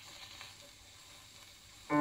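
Surface hiss and faint crackle of a shellac 78 rpm record as the stylus of an HMV 2001 record player's pickup runs in the lead-in groove, heard through the player's speaker. Piano music starts suddenly just before the end.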